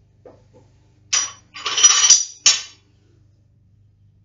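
Metal clinking and rattling from a barbell's plates and collar being handled: a short clink about a second in, a longer jangling rattle, then one more sharp clink.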